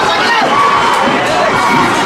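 Stadium crowd cheering and shouting the runners on during a track relay race, many voices at once, loud and continuous.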